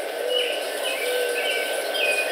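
Birds chirping in short calls over a steady background hiss, with a thin steady tone running underneath.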